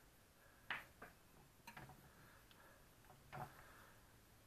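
Near silence broken by a few faint clicks and light knocks, four or so spread over the few seconds, as a quadcopter is set down and adjusted on a digital scale.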